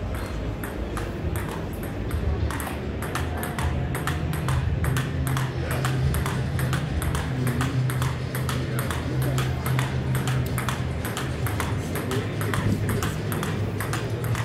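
Table tennis rally: the ball clicking off the paddles and the table in a quick, continuing run of sharp ticks.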